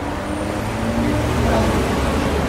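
Road traffic: a steady low rumble of motor vehicle engines with a faint engine hum above it, slowly getting louder.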